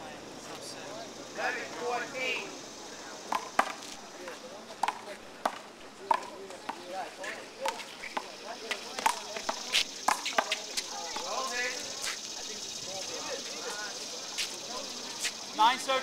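One-wall handball rally: irregular sharp slaps of hands hitting the big blue rubber ball and the ball smacking the concrete wall and court, with a few short voices in between.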